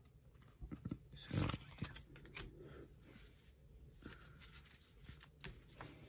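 Basketball trading cards being handled, faint rustles and clicks of cards sliding against each other and against the table, with one louder rustle about a second and a half in.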